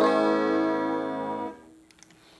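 A single guitar chord played through a flanger effect running on a SHARC Audio Module. It rings for about a second and a half, then stops.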